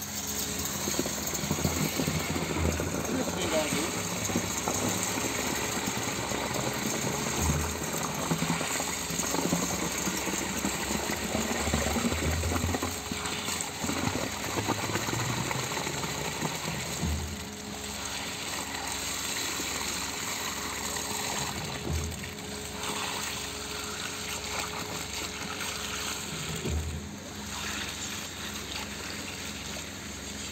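Concrete pump truck running steadily while pushing wet concrete through its hose into a foundation trench, with low thumps every few seconds from the pump's strokes.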